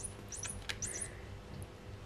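Battery-powered squeaking toy mouse chirping as a kitten bats it: short, very high-pitched rising squeaks in quick clusters of two or three during the first second, with a faint click among them.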